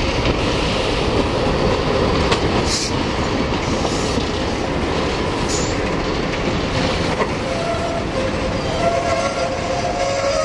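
Several diesel locomotives working past at close range: a heavy, steady engine rumble with the rattle of running gear on the rails. Two brief high hissing squeaks come about three and five and a half seconds in, and a steady high tone enters near the end.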